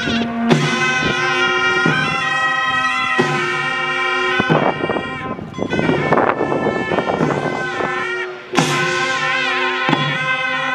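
Traditional Korean processional music played live by a ceremonial band: reedy, shawm-like horns hold sustained notes with a wavering pitch over steadier lower tones, with occasional drum strikes. The music drops briefly about eight and a half seconds in, then comes back with a strike.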